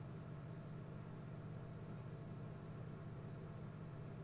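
Steady low hum with a faint hiss behind it, unchanging throughout: the background noise of the recording.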